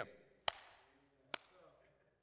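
The last word of a man's speech dying away in a reverberant room, then two short, sharp taps a little under a second apart.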